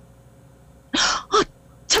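A dumbfounded, breathy "ah!" exclamation from a voice actor, heard about a second in, with a second short burst just after it and the next word starting near the end.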